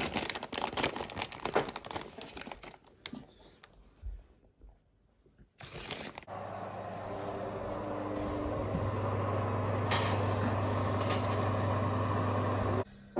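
Plastic bag of grated mozzarella crinkling as cheese is shaken out over a pizza, thinning out over the first few seconds. About six seconds in, a steady electric hum with a low tone starts, from a fan oven running, and slowly grows louder.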